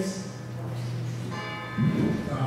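A bell ringing, its tones dying away and struck again about a second and a half in.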